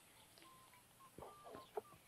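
Near silence with outdoor ambience: a few faint, short bird calls come a little over a second in.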